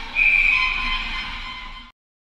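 Referee's whistle in an ice rink: a loud, shrill blast starting about a quarter second in and tailing off, over arena background noise. The sound cuts off abruptly just before the end.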